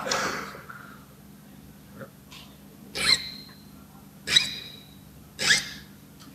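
Hand file rasping across a key, about five strokes a little over a second apart, two of them with a brief high metallic ring. The file is taking material off a factory-cut key that is cut higher than needed, before impressioning.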